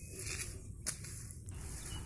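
Faint rustling and handling noise over a steady low rumble, with one sharp click a little before the middle.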